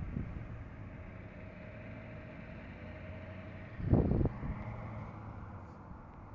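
A steady low outdoor hum, like traffic or a running engine nearby. About four seconds in, a brief louder rumble of the phone being handled as it is turned down to the ground.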